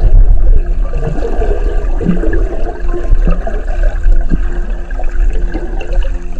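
Water rushing and gurgling over a submerged camera's microphone: a loud, steady low rumble with short gurgles about once a second, as a freediver swims underwater.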